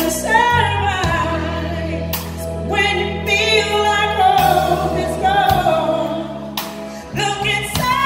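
A woman singing a slow pop ballad live into a microphone, with sustained melodic lines and vibrato, backed by a band with electric bass guitar holding low notes underneath.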